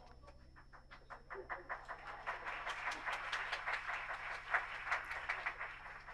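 Audience applause: scattered claps begin about a second in, build to a dense, steady patter, and thin out near the end.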